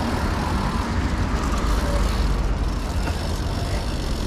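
Steady rushing noise of a BMX bike being ridden: tyres rolling on concrete sidewalk and wind, with street traffic, heaviest in a low rumble.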